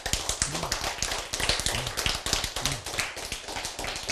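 Clip-on microphone handled and rubbed by fingers at the collar: a dense, irregular run of rustling and tapping clicks, with a faint voice now and then beneath them.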